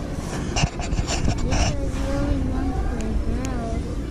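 Rubbing and rustling close to the microphone, several short scratchy strokes in the first second and a half, over a low rumble with faint voices in the background.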